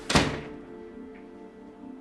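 A single loud thud just after the start, dying away within half a second: a door shutting. Background music plays throughout.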